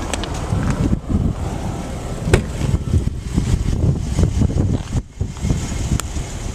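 Uneven low rumble of wind and handling noise on a handheld camera's microphone as it is carried around the vehicle, with a few sharp clicks, one about two seconds in.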